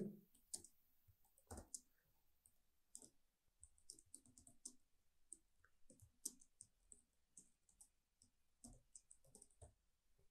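Faint computer keyboard typing: irregular, scattered key clicks, a few a second.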